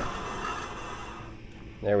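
Wind rush and tyre noise from an electric trike fading steadily as it brakes hard from its top speed of about 13 mph, with no squeal from the brakes.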